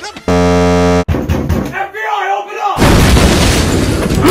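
Chopped-up remix audio: a harsh, steady buzzing tone lasting about a second near the start, brief snatches of voice, then a loud noisy blast for the last second or so.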